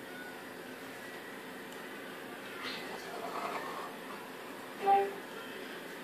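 Quiet, steady room noise with the faint scrape of a small knife cutting through a sponge cake on a cardboard cake board. A brief pitched sound stands out about five seconds in.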